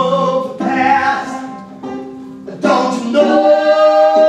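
Live singing in long held notes over a banjo, with a short dip in the sound around two seconds in before a new sustained note.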